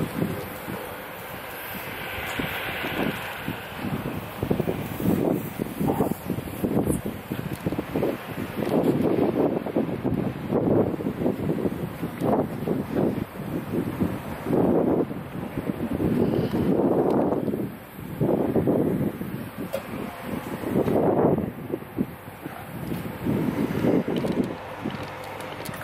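Wind buffeting the camera microphone in irregular gusts, a rough rumbling noise that swells and drops every second or so.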